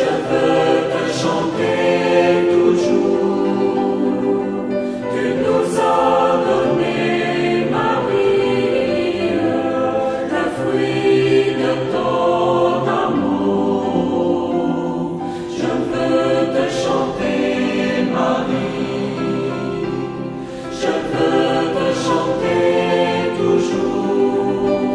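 A choir singing a Christian hymn in French, in phrases with a short break about two-thirds of the way through.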